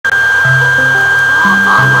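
Discord incoming-call ring playing loudly, a short tune of low notes over a steady high-pitched tone and hiss.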